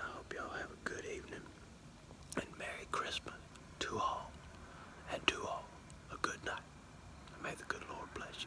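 Only speech: a man whispering in short phrases.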